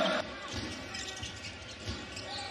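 Loud arena crowd noise cuts off suddenly a fraction of a second in. Quieter basketball-arena ambience follows, with a few low thuds of a basketball being dribbled on a hardwood court.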